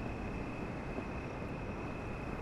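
Steady background ambience: an even low hiss and rumble with a faint, constant high-pitched whine, and no distinct events.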